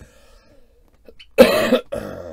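A man's short, loud, breathy burst of laughter, with two quick pulses, about one and a half seconds in.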